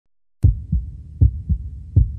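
Heartbeat sound effect: low paired lub-dub thumps repeating about every three-quarters of a second, starting after a brief silence.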